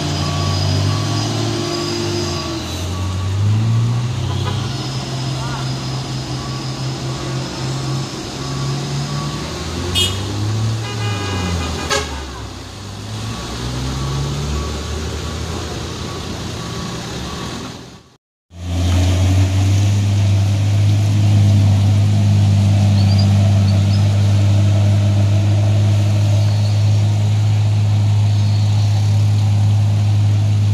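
Vehicle engines labouring and revving up and down as trucks and a pickup climb a steep hairpin, with a short horn toot about 11 seconds in. After a sudden break, a steady, louder engine drone close by.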